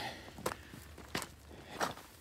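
Footsteps of a hiker on a loose rocky, gravelly trail: three steps, about two-thirds of a second apart.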